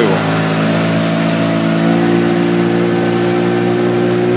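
A boat's outboard motor running steadily under way, its pitch edging up slightly about halfway through.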